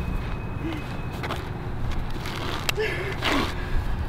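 Steady low outdoor rumble with a few faint, short voice sounds and a couple of soft clicks.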